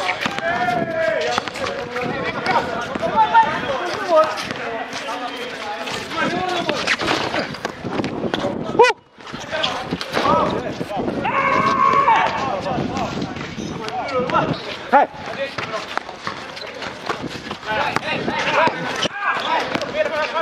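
Players' voices shouting and calling out during a pickup basketball game, over the bounces of a basketball on a concrete court and running footsteps. The sound drops out briefly about nine seconds in.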